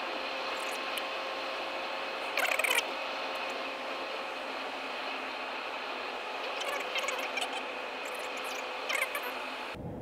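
Steady road and wind noise inside a 2025 Ram 1500 pickup's cabin at freeway speed, thin and without low rumble. There is a brief louder sound about two and a half seconds in and a few light ticks near the end.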